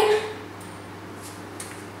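A coin flicked off the thumb for a toss: a faint tick with a brief, faint high ring about half a second in, then a couple more faint ticks over quiet room tone.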